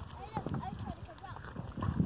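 Faint voices talking in the background, with a few soft knocks and taps.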